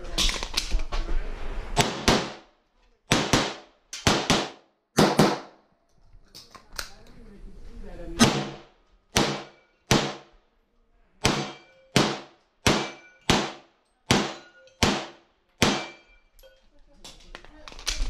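Pistol shots from a Grand Power X-Caliber fired during a USPSA stage: about twenty shots, in quick pairs at first and later in a steady string a little over half a second apart, with a pause of about two seconds in the middle. Each shot has a short echo under the roofed shooting bay.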